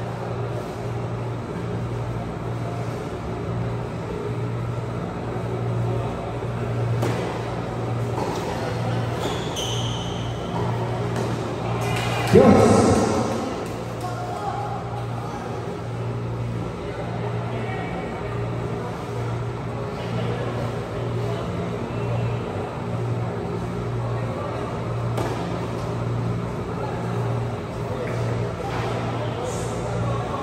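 Tennis balls being hit and bouncing on an indoor hard court during a doubles rally, over background music and distant voices in a large hall. A single loud thump with a short echo comes about twelve seconds in.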